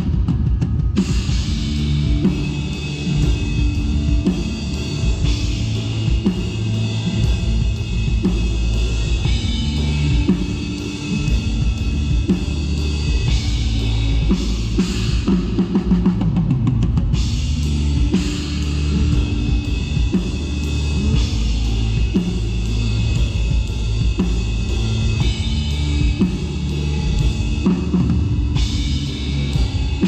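Acoustic drum kit played without a break through a song: bass drum, snare and cymbals, with the song's other instruments, held notes and a bass line, sounding underneath.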